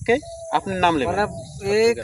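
A man speaking, with a faint steady high-pitched buzz underneath.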